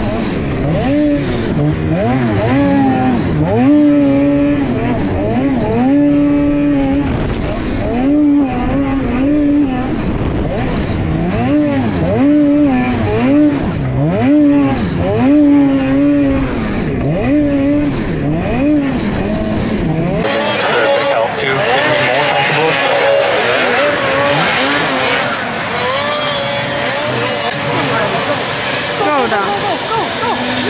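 Onboard two-stroke snocross race sled engine revving hard and dropping back over and over as it rides the race track, its pitch rising and falling every second or two. About twenty seconds in, it cuts to a noisier trackside recording of several sleds racing at a distance.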